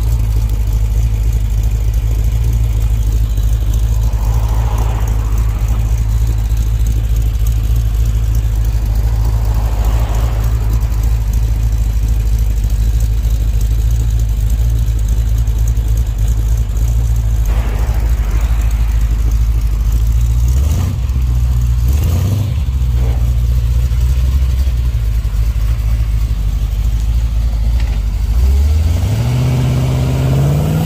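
1957 Chevrolet Bel Air's fuel-injected engine idling steadily, with a few short throttle blips about two-thirds of the way through, then revving up as the car accelerates near the end.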